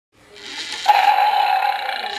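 Channel-logo intro sound effect: a swell that breaks about a second in into a loud, held, animal-like roar with a steady pitch.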